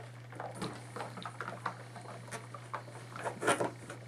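Trousers being handled on an ironing board: light scratchy rustles and small knocks as hands smooth the fabric and the steam iron is taken up and set on the seam, with a louder clatter near the end. A steady low hum runs underneath.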